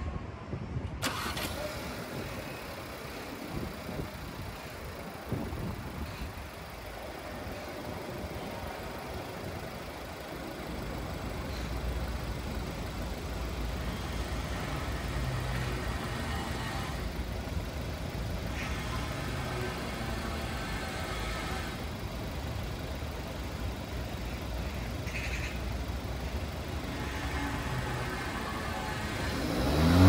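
Volkswagen Tiguan Allspace's 1.4 TSI petrol engine starting about a second in, then idling steadily, its low rumble louder from about ten seconds in.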